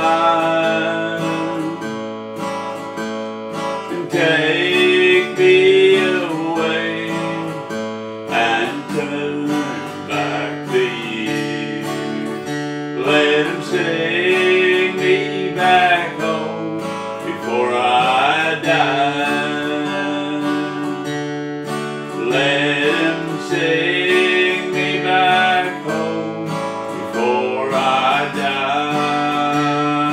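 Steel-string acoustic guitar strummed and picked as accompaniment to a slow country ballad, with a second melody line sliding up and down over the chords.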